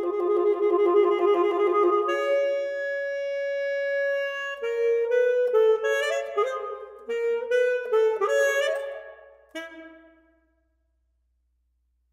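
Solo alto saxophone playing: a wavering low note, then a held higher note, then a run of quick short notes that stops about ten seconds in.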